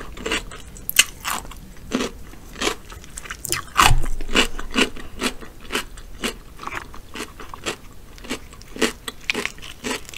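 Close-miked chewing of crisp raw cucumber: a steady run of wet crunches, about two to three a second, with one louder crunch about four seconds in.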